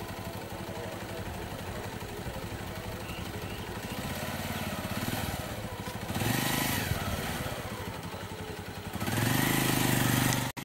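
Motorcycle engine idling close by with a steady, fast low pulse, growing louder in two stretches, about six seconds in and again from about nine seconds.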